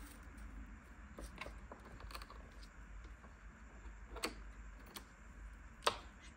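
A few scattered light clicks and taps of hands handling the plastic body of an upturned Roborock S7 robot vacuum and a plastic bag, with a sharper click near the end.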